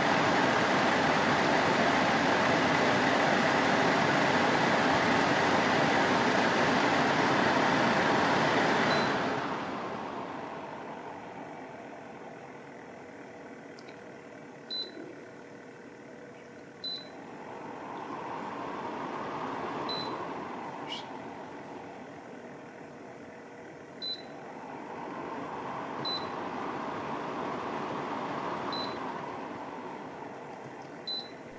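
AMEIFU FXAP2W HEPA air purifier fan running at high speed with a steady rush of air, dropping about nine seconds in to a much quieter low speed. Short touch-control beeps follow every couple of seconds as buttons are pressed, and the fan noise rises and falls twice.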